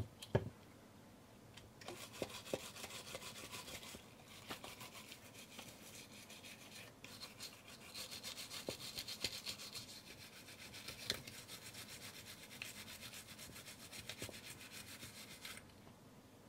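Toothbrush bristles scrubbing the top plate and dials of a Cosina CT1 Super film camera in quick back-and-forth strokes, starting about two seconds in, with brief pauses, and stopping just before the end. A single soft knock comes right at the start.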